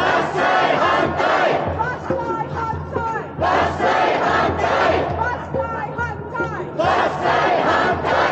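Crowd of protesters chanting 'Bassai hantai!' ('No tree felling!') in unison. Loud group shouts come about three times, roughly every three and a half seconds, alternating with a single voice calling out between them.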